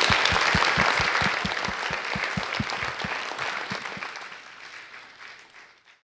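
Audience applause, with one close clapper standing out at about four to five claps a second until about four seconds in. The applause then dies away over the last couple of seconds.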